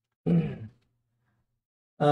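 A man's brief vocal sound: one short syllable about a quarter second in, during a silent pause in his speech.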